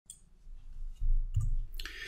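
Computer mouse clicks, one near the start and another about halfway through, over a low rumble of desk or microphone handling noise that is loudest in the second half. A soft breathy hiss comes in near the end.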